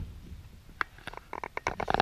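A single click, then a quick run of sharp clicks and knocks building to the loudest one at the end: handling noise at the open rear door of a car, a 2016 Chevrolet Cruze, as the camera is moved into the back seat.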